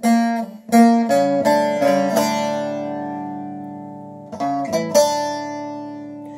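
Short-neck bağlama (saz) playing a phrase in hicaz makam: a quick run of plucked notes in the first two seconds, then a long ringing note that slowly fades. About four and a half seconds in, three more notes are plucked and ring on.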